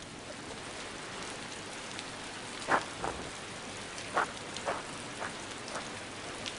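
Steady rain falling, with several louder single drops splashing from about halfway through.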